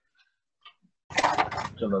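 About a second of near silence broken by a few faint light ticks, then a man's voice speaking.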